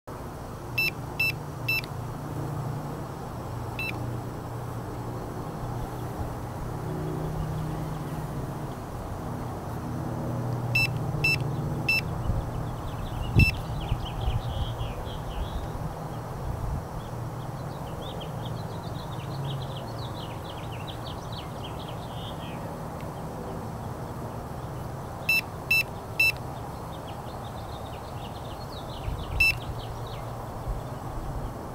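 Handheld electrosmog RF meter beeping in short high tones: a quick run of three beeps and then a single beep, heard three times, under a steady low background rumble.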